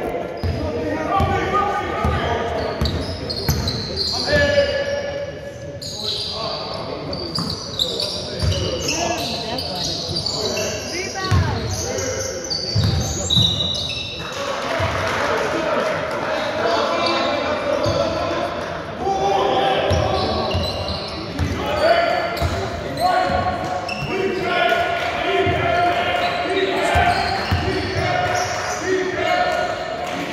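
A basketball being bounced and dribbled on a wooden sports-hall court, in a run of short thumps, with players' voices calling out over it, all echoing in the large hall.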